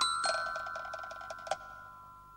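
A single chime-like ringing note fading slowly away, with a few faint light ticks under it.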